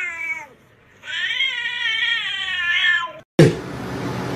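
A cat giving two long, drawn-out meows that waver in pitch: the first trails off about half a second in, and the second runs for about two seconds. Near the end comes a sudden thump, followed by steady hiss.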